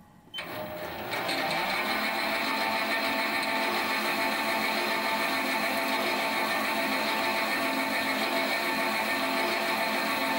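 Metalworking lathe starting suddenly about a third of a second in, growing louder about a second later, then running steadily in reverse with a steady whine, turning a 6-degree taper on a leaded steel collet.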